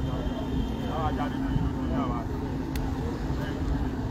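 A steady low hum and rumble, like a car engine running, with scattered voices of people talking about one and two seconds in.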